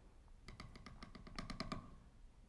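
A faint run of light clicks and taps from hands working food into a glass mason jar.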